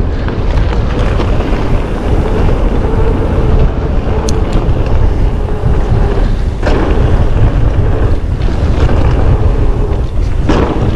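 Wind rushing over the camera microphone, with the rumble and rattle of a mountain bike riding a rough downhill trail. A faint steady hum fades out about halfway through, and a sharp knock comes about two-thirds of the way in.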